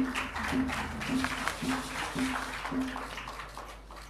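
Audience applauding, fading out toward the end, with a short low note repeated about twice a second over it for the first three seconds.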